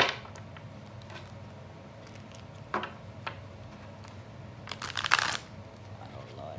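A new deck of oracle cards being shuffled by hand: a sharp tap at the start, a couple of light clicks a few seconds in, and a brief rustle of cards riffling together near the end.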